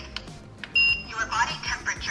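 Infrared forehead thermometer giving a single short, high beep a little under a second in as it takes a reading.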